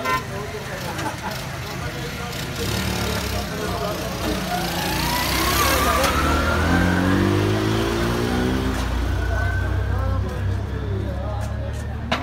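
A motor vehicle passes close by in a busy street. Its engine rumble swells to its loudest about halfway through as the engine note rises in pitch, then eases off, over street chatter.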